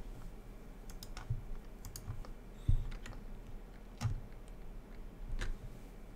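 Scattered computer keyboard and mouse clicks at a desk, irregular and a second or so apart, with a few low thumps, the loudest about two and a half seconds in.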